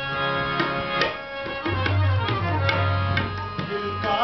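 Tabla played in a steady rhythm, sharp strokes over a harmonium holding sustained chords. A deep low drum tone rings through the second half.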